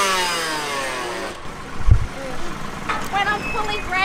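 A dirt bike engine revving, then winding down in pitch over the first second and a half as the throttle comes off. A short low thump follows about two seconds in.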